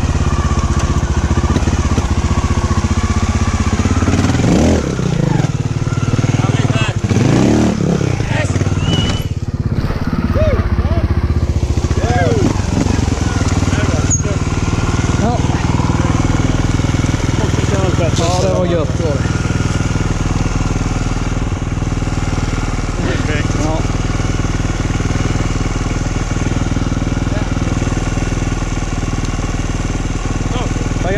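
Trials motorcycle engine running steadily, mostly at idle, with voices talking over it.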